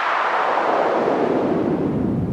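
Intro sound effect: a noise sweep falling steadily in pitch from high to low, landing in a deep rumbling boom near the end.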